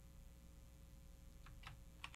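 Near silence: room tone with a low steady hum, and a few faint clicks near the end.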